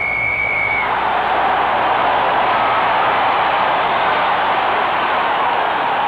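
Referee's whistle blowing one long steady blast in the first second, the full-time whistle ending the match, then a packed stadium crowd cheering loudly without a break.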